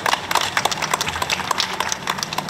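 A small crowd clapping, the separate hand claps quick and irregular.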